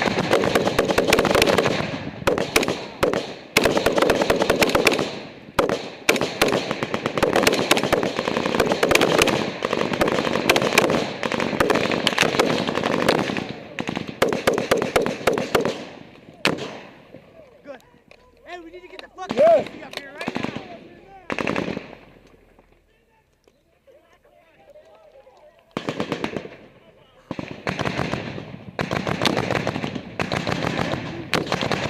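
Close-range rifle fire in a firefight: rapid, dense shots for roughly the first half, then a lull with a few single shots, with the rapid fire starting again about four seconds before the end.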